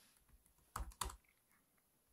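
Two keystrokes on a computer keyboard about a second in, a fifth of a second apart.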